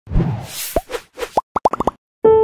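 Logo-sting sound effects: a brief noisy swoosh, then a string of short rising blips that quicken into a rapid run near the end and stop abruptly.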